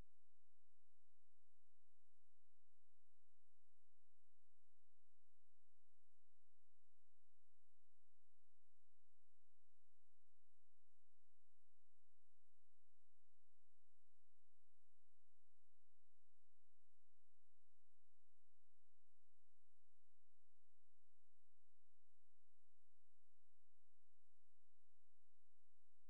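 Faint steady electronic tone of a few fixed pitches held without change, over a low hiss; nothing else is heard.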